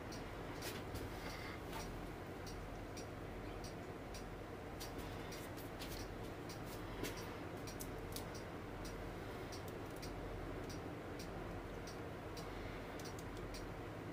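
Faint light ticks, roughly one or two a second and a little uneven, over low steady room noise.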